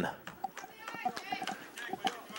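Faint distant high-pitched voices, children calling out on and around the ball field, with a few light clicks, heard in a lull in the commentary.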